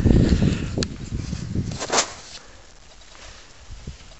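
Rustling and handling noise as the camera is moved close to the ground, with a sharp click just under a second in and a short knock about two seconds in, then it settles to a quiet outdoor background.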